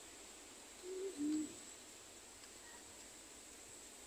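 A bird's two-note hooting call about a second in, each note short and steady in pitch, the second lower than the first, over faint background hiss.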